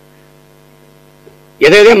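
A steady low electrical hum, made of a few fixed tones, fills a pause in speech; a man's voice starts loud close to the microphones about one and a half seconds in.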